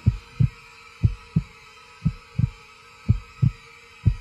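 Heartbeat sound effect: deep low double thumps, lub-dub, about one pair a second, four pairs in all, over a faint steady drone.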